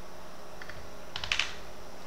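Computer keyboard keystrokes: a couple of faint key clicks a little after half a second, then a quick run of several clicks about a second and a quarter in, consistent with the file being saved by key shortcut.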